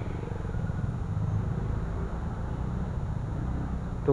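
TVS NTorq 125 scooter's single-cylinder four-stroke engine running at low revs as it crawls through traffic, a steady low rumble.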